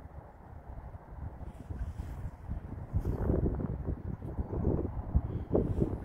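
Wind buffeting the microphone outdoors: an uneven low rumble that gusts and eases, with no machine running.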